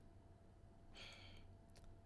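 Near silence: room tone with one short, soft breath from the narrator about a second in. A couple of faint computer-mouse clicks follow near the end.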